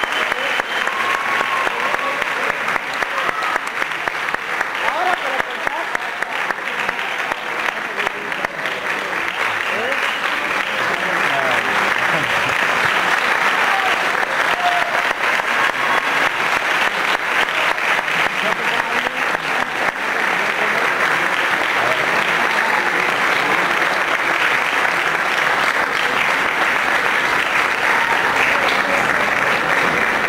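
Audience applauding steadily after a choral performance, with voices calling out from the crowd among the clapping.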